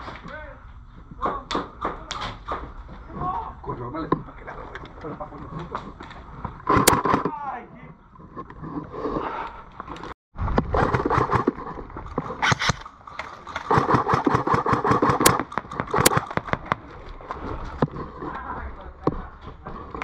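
Airsoft game sounds: a busy run of sharp clicks and knocks from gear and movement, with shouting voices twice, and a brief dead cut about halfway through.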